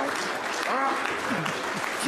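Applause from an audience, with a man's voice over it partway through.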